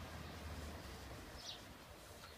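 Faint outdoor ambience: a low hum stops under a second in, and a single short, high bird chirp comes about one and a half seconds in.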